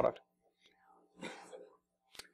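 A man's voice ending a word, then a pause of near silence with one faint breath about a second in.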